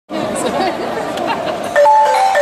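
Crowd chatter, then near the end a live band's music begins with a melody of short held notes stepping between a few pitches.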